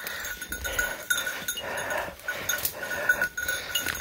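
Brush and leaves swishing and footsteps crunching as someone walks through dense woodland undergrowth, with a thin steady high tone underneath.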